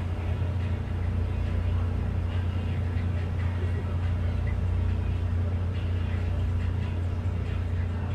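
Steady low mechanical hum that holds unchanged throughout, with no rise or fall in pitch.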